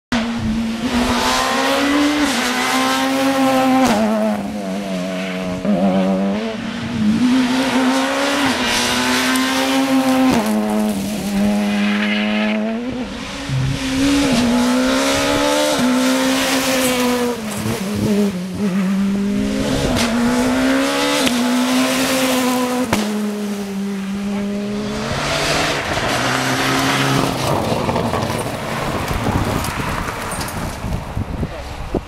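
Rally car engines run hard at speed on a tarmac stage. The engine note keeps climbing and dropping every second or two as the cars accelerate, shift and lift.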